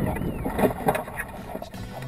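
Wind noise on the microphone with rustling and light thuds from a hang glider pilot's feet running through dry grass at the end of a landing, tapering off over the two seconds. Music starts right at the end.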